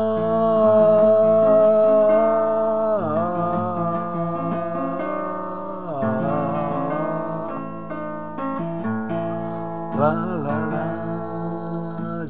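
Acoustic guitar playing with a voice singing long wordless held notes over it. The voice slides down in pitch and back twice.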